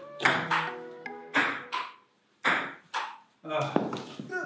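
Table tennis rally: a ball clicking back and forth off paddles and the table, with sharp hits at an irregular pace of roughly one or two a second, each ringing briefly in the room.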